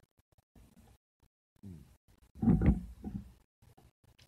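A man drinking water, with faint small clicks of swallowing, then a loud vocal exclamation after the drink about two and a half seconds in.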